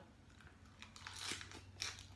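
Crisp crunching as a person bites into and chews a raw red cabbage leaf, a few separate crunches in the second half, the sharpest near the end.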